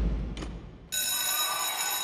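A refrigerator door shuts with a heavy thud whose echo dies away over the first second. About a second in, a bell starts ringing steadily, marking mealtime.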